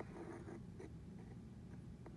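Faint scratching and a few light ticks from a metal probe tip moving against a plastic anatomical model, over a low steady room hum.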